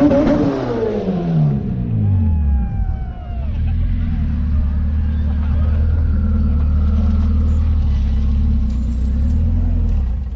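Two race cars at full throttle, a turbocharged all-wheel-drive Honda Civic and a Mitsubishi Lancer Evolution, pulling away. Their engine pitch falls over the first three seconds, followed by a steady low rumble.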